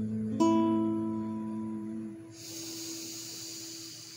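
Acoustic guitar's last chord of the song struck about half a second in and left ringing, fading away. From about halfway a steady hiss sounds over the dying notes.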